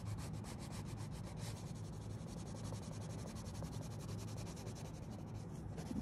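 Colored pencil scratching across a paper workbook page in rapid back-and-forth shading strokes, several a second, as squares of a grid are colored in.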